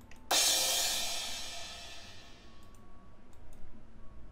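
A crash cymbal sample struck once, about a third of a second in, its bright wash fading away over about two seconds. A few faint clicks follow near the end.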